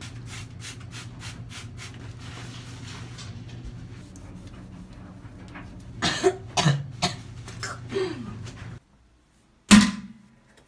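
Steady low hum with quick clicks and rustles of handling for the first few seconds, then a few short coughs from about six to eight seconds in. The sound cuts out just before the end and one loud click follows.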